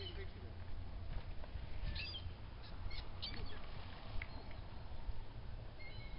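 Short, high bird calls at scattered moments over a steady low rumble, from the seabirds feeding over the lagoon.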